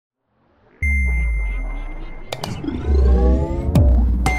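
Electronic intro sting for a logo: after a moment of silence, a deep bass hit with a held high ping, then rising swooshing glides and two sharp hits.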